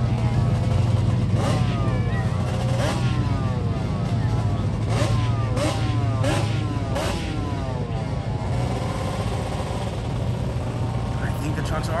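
Small off-road racing engines revving hard out on a dirt track, their pitch sweeping up and down over and over, over a steady low engine drone and a few sharp pops.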